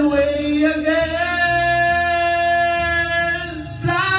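A man singing into a handheld microphone, holding one long, steady note that breaks off just before a new phrase begins near the end.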